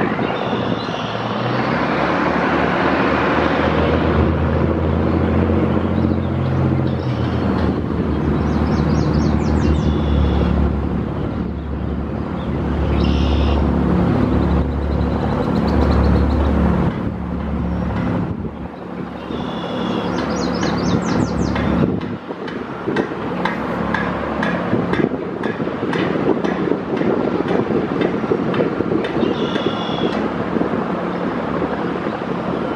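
Road traffic noise with a deep, steady engine drone from a heavy vehicle through most of the first two-thirds, dying away about three-quarters of the way in. Short high chirping sounds come through a few times.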